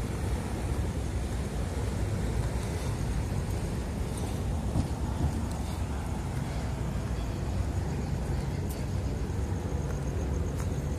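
Street traffic at night: cars driving past on the road, a steady low road rumble with no break.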